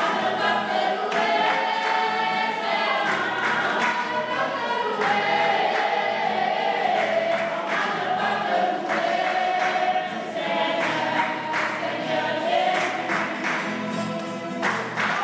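A choir singing a hymn, with many voices carrying the melody over a steady low tone and sharp beats running through it.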